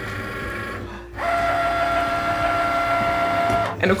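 Cricut cutting machine running with a chipboard sheet loaded on its mat: quiet for about the first second, then a steady motor whine on two held tones that stops just before the end.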